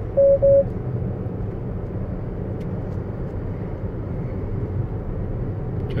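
Two short beeps at the same pitch from a Tesla Model S, about a quarter second in: the Autopilot warning to hold the steering wheel. Under them, steady road and tyre noise inside the cabin at about 47 mph.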